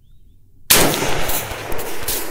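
A single shot from a Palmetto State Armory PSAK-47 AK rifle in 7.62×39 about two-thirds of a second in, its report echoing and fading away over the next second and a half.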